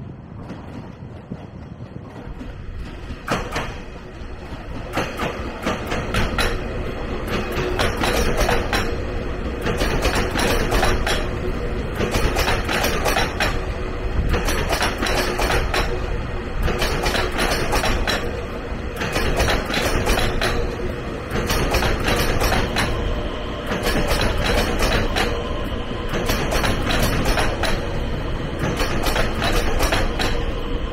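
Taiwan Railways EMU3000 electric multiple unit pulling into a station past the platform. A rumble grows louder over the first several seconds as it nears, then holds at its loudest as the cars roll by, with a steady hum and a regular clacking of wheels over rail joints about once a second.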